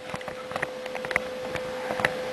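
Handling noise from a camera being lifted off its stand: rubbing and scattered small clicks close to the microphone, over a steady background hum.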